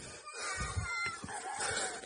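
Faint, drawn-out, high-pitched human cries calling out in the distance, over low rumbling from the phone's microphone being jostled.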